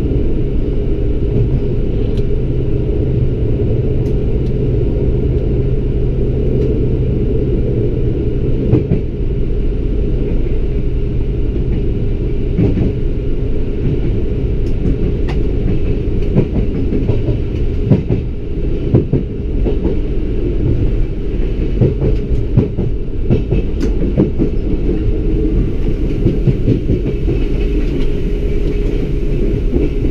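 Alstom Coradia LINT 41 diesel railcar running, heard from the driver's cab: a steady low drone throughout, whose engine note drops at about nine seconds. From then on irregular sharp wheel clicks come as it rolls over points and rail joints.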